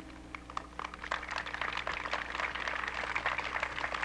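Crowd applauding, a dense patter of hand claps that swells from about half a second in, over a steady low hum in the old recording.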